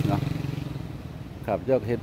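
A motorcycle engine passing on the street, its low hum fading away over the first second. A man's voice speaks briefly near the end.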